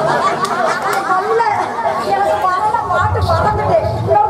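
Several voices talking at once in lively chatter, with no music playing.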